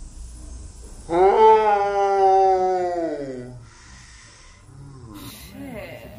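A woman's loud, drawn-out cry of pain, starting suddenly about a second in and lasting about two and a half seconds, sliding down in pitch as it fades, as the piercing needle is pushed through her nostril.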